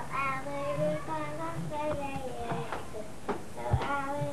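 A young child's voice singing or chanting in drawn-out, held notes. A dull thump comes near the end.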